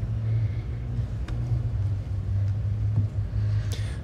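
Steady low rumble and hum of a large hall's background noise through the stage microphone and PA, with a couple of faint clicks.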